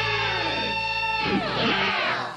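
Two electric guitars played together, holding a chord whose notes bend up and down in pitch.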